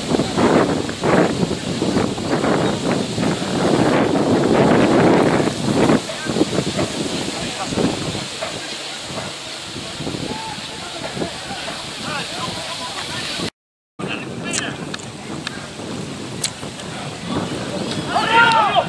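Wind buffeting the microphone, heaviest for the first six seconds, with faint shouts of players across an open rugby pitch. The sound cuts out briefly about two-thirds of the way in, and afterwards there are a few sharp clicks along with the voices.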